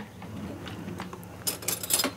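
A metal spoon clinking against a ceramic bowl, a few quick clinks near the end.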